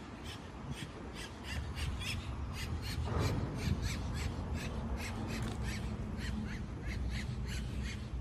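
A bird calling in a quick, repeated series of short, harsh notes, about three to four a second, over a low outdoor rumble of wind and traffic.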